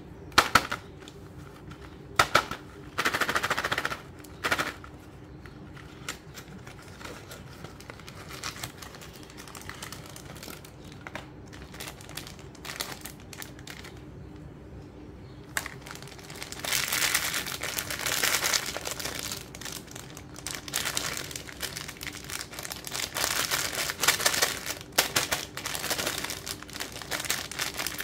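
Cardboard sweet box being opened by hand: a few sharp snaps and a brief tearing rasp in the first few seconds. From about halfway on, thin plastic candy wrappers crinkle and crackle continuously as they are handled.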